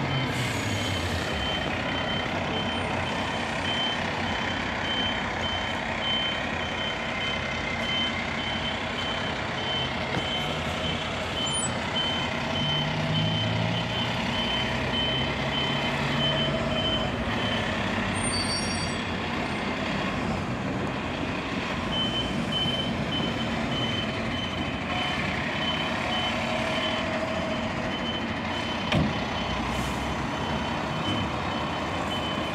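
Fire engine's reversing alarm beeping in a steady, evenly spaced high pitch over the truck's diesel engine running as it backs up; the beeping pauses for a few seconds partway through and then starts again. A short sharp sound stands out near the end.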